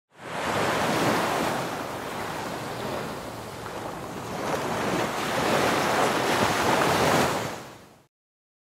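Rushing-water sound effect, an even roar of noise that swells, eases, swells again and fades out near the end.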